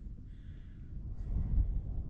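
Wind buffeting the microphone: a steady low rumble that swells about one and a half seconds in.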